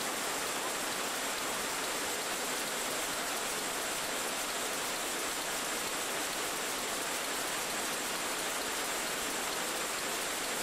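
Steady, even hiss of recording noise on an old soundtrack. No clatter or rhythm of machinery comes through.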